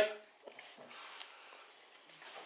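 A man's voice finishes a word right at the start. Then the room goes quiet, with a couple of faint clicks and soft breathy noise close to the microphone.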